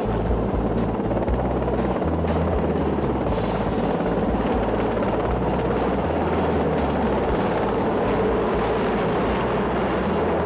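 A loud, steady mechanical drone, of the aircraft or vehicle kind, with music playing underneath.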